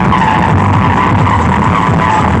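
Loud dance music from truck-mounted carnival sound-system speaker stacks, heavy repeating bass under a wavering high synth line.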